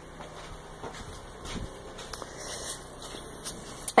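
Faint rustling and soft knocks from a handheld phone being turned around, over quiet outdoor background noise.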